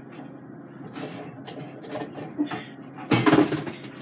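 Under-sink kitchen cabinet being opened and rummaged through: soft knocks and shuffling of items inside, then a louder clatter about three seconds in as things are moved about.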